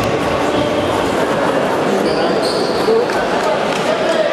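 Indoor futsal game in a reverberant sports hall: players' indistinct calls and the ball thudding on the court and off players' feet. Two brief high squeaks about two seconds in.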